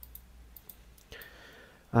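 A few faint, sparse computer mouse clicks.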